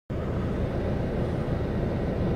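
Steady low rumble of a car's engine and road noise heard from inside the cabin, cutting in suddenly at the start.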